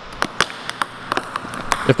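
Several plastic ping-pong balls bouncing on a hard floor: an irregular run of sharp clicks, about ten in two seconds.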